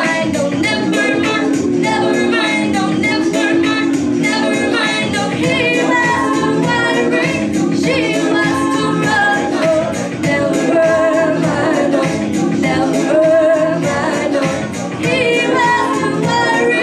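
A woman singing a live song over sustained low electronic keyboard chords, with her vocal line rising and falling continuously.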